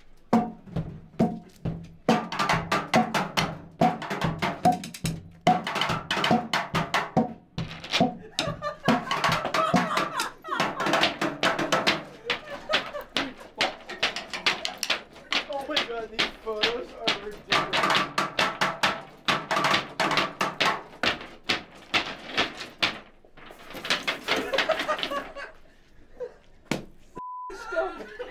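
Improvised percussion: sticks beating a fast rhythm on a metal dustbin, metal stair railings and a wooden board, hit after hit with a few brief pauses.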